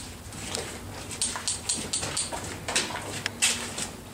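Footsteps scuffing and crunching on a gritty tunnel floor, an irregular run of short sharp crackles, a few each second.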